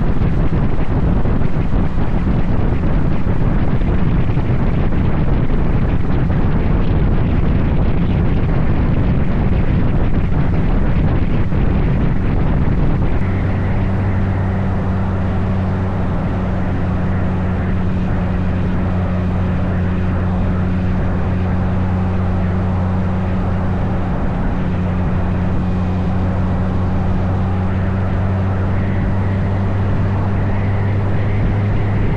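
Motorcycle riding at highway speed: steady wind rush on the handlebar-mounted microphone over the engine's drone. About 13 seconds in, the wind rush eases and the engine's even, steady hum comes through more clearly.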